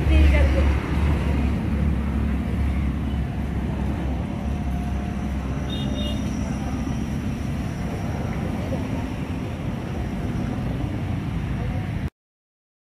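Steady outdoor background noise with a low rumble that eases over the first couple of seconds, and a brief high tone about six seconds in.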